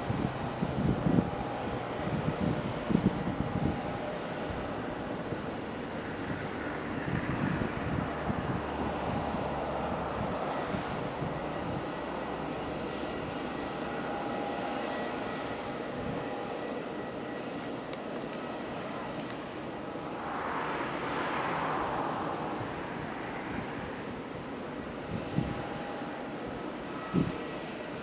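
Airbus A319 jet airliner's CFM56 turbofan engines running at taxi idle: a steady rushing whine with faint high tones, swelling briefly a little past the middle.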